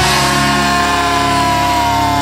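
A punk band's final distorted electric guitar chord, struck once as the drums stop and left ringing. Its pitch sags slowly downward as it sustains.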